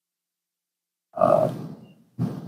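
Dead silence, then about a second in a man's short, breathy grunt that fades quickly.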